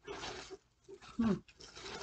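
Rustling and scraping in short spurts as a box of 45 rpm records is tugged out of a larger box, with a short strained 'hmm' a little past the middle.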